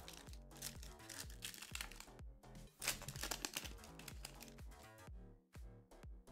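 Quiet background music with a repeating bass line, over the light crinkling of a foil booster pack wrapper and trading cards being handled.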